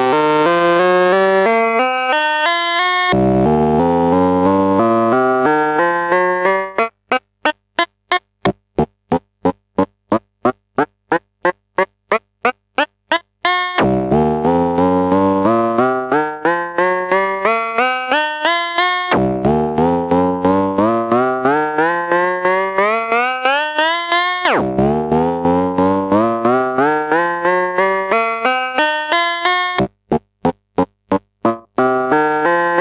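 Tesseract Radioactive Eurorack digital oscillator voice, raw with no effects, playing repeated rising scales. In the middle the notes are short gated blips, about five a second; elsewhere they run into one another, and the tone changes between runs as its knobs are turned. A faint hum from the recording equipment sits underneath.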